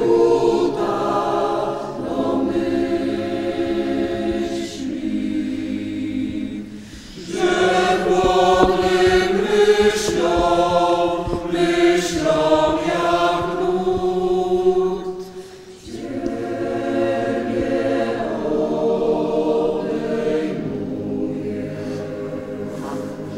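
Choir singing in long sustained phrases, with two brief pauses between phrases.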